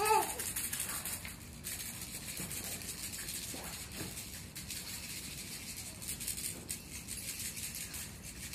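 A baby's toy rattle shaken continuously, a steady dry rattling used as a sound to make an infant turn its head. A brief voice sound comes right at the start.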